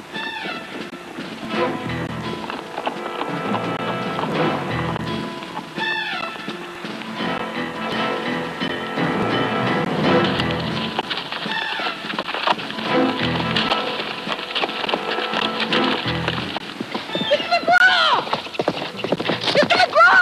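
Orchestral film-score music over the hoofbeats of several horses being ridden over rocky ground, with a horse whinnying about six seconds in and again near the end.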